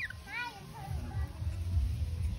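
A baby monkey gives one short, high squeaky call about half a second in, rising then falling in pitch, just after a quick falling chirp. A low rumble runs underneath.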